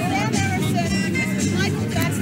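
Music and voices over a steady din of crowd noise, starting suddenly just before this point.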